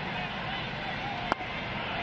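Steady ballpark crowd murmur, with a single sharp pop about a second and a third in: a pitch smacking into the catcher's mitt.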